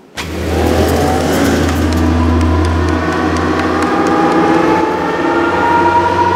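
Launch sound effect of a train accelerating: a deep, steady rumble with a whine that rises slowly in pitch, starting the moment the countdown ends. Faint sharp clicks are scattered through it.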